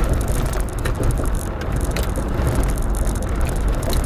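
Steady low rumble of a car cabin, with irregular crisp clicks and crunches of crunchy fried food being chewed close to the microphone.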